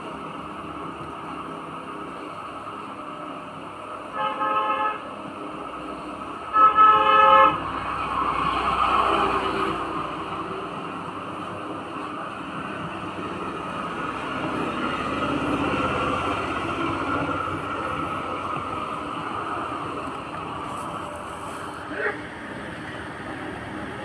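A horn sounds twice, about two seconds apart, followed by a long rising and falling swell of passing-vehicle noise.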